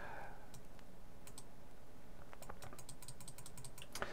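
Computer mouse clicks and scroll-wheel ticks: a few single clicks, then a quick run of light clicks for about a second near the end, over a faint steady low hum.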